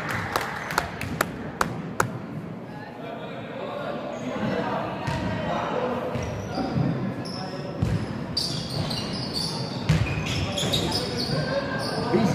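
Basketball bouncing on a hardwood sports-hall floor, several sharp bounces in the first two seconds, over voices echoing around the large hall.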